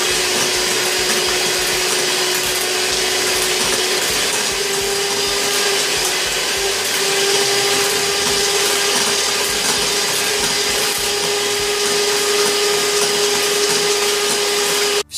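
Handheld electric mixer running steadily with its beaters whisking a liquid milkshake mixture in a glass bowl: a continuous motor whine whose pitch steps up slightly twice, a little after four seconds and again around seven.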